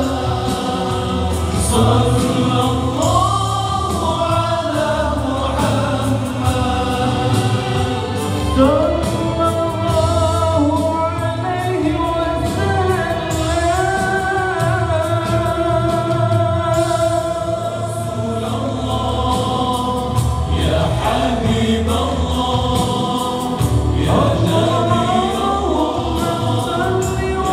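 Nasyid sung live by a male vocal group of five in close harmony through microphones and a PA, with a steady low part beneath the voices.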